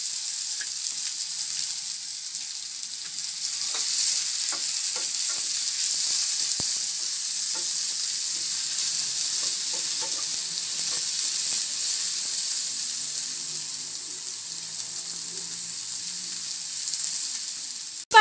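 Sliced onions and green capsicum sizzling as they fry in a steel pan, with a steady hiss. A wooden spatula scrapes and knocks against the pan as they are stirred, mostly in the first half.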